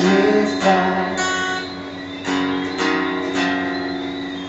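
Guitar strummed in a live song, a few chord strokes ringing on.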